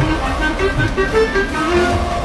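Instrumental interlude of an Urdu tarana: a melody of short, quick notes stepping up and down over a steady low beat, with no singing.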